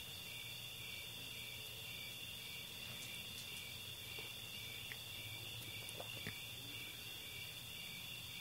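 Faint crickets chirping: a steady, high, pulsing trill over a low hiss.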